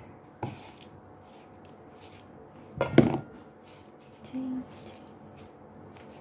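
Wooden spatula stirring and pressing stiff cookie dough in a bowl: faint scraping and ticking, with a short knock about half a second in and a louder knock about three seconds in.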